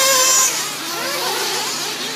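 Several 1/8-scale nitro RC buggies running on their small glow-fuel two-stroke engines at high revs. A high-pitched whine is loudest for the first half second and then fades, and a lower engine tone climbs about a second in.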